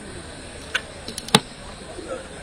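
Three short, sharp clicks over low background noise; the last, about a second and a third in, is the loudest and has a knock to it.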